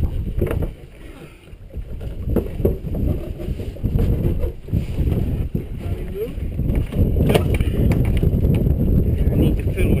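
Wind buffeting the microphone aboard a sailboat under way, a rough, gusting rumble with water sounds, broken by a few sharp knocks, one about half a second in, one about two and a half seconds in and a louder one about seven seconds in.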